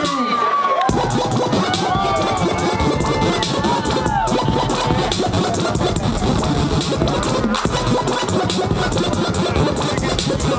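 Loud electronic bass music from a live DJ set played over a PA. It has sliding, warping synth tones and a dense beat, and the heavy bass comes in about a second in.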